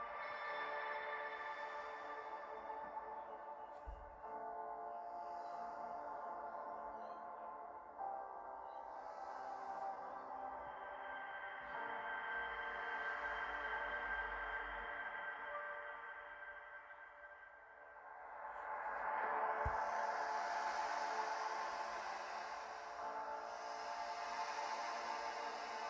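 Background music of sustained, slowly shifting tones, swelling louder about three-quarters of the way through.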